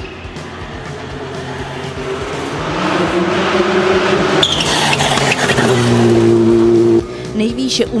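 Škoda Fabia RS Rally 2 rally car's turbocharged four-cylinder engine driven hard on a stage, growing louder as the car approaches, its note stepping up and down. The sound cuts off suddenly about seven seconds in.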